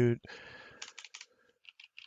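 Computer keyboard typing: two short runs of a few quiet keystrokes, one about a second in and one near the end.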